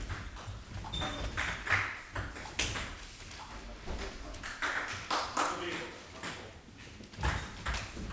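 Table tennis ball clicking off bats and table in irregular strokes, with a lull between points and voices in the hall in the middle, and ball strokes again near the end.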